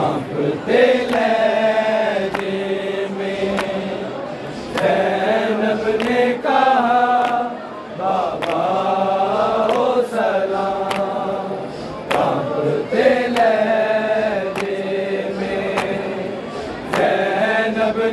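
Unaccompanied male voices chanting a noha, a Shia lament recited in rising and falling phrases a few seconds long, with a group of men joining the lead reciter.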